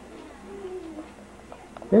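Quiet room with a faint, short, falling vocal sound about half a second in, then a voice starting to speak at the very end.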